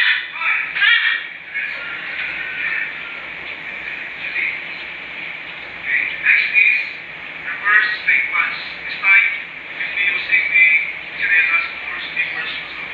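Indistinct voices talking on and off, with no words that can be made out.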